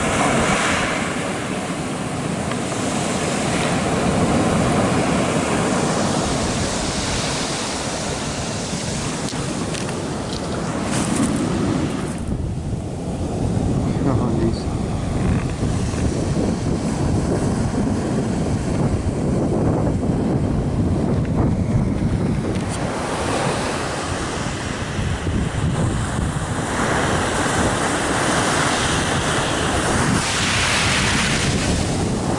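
Ocean surf washing in and out on a pebble beach, swelling and fading, with wind buffeting the microphone.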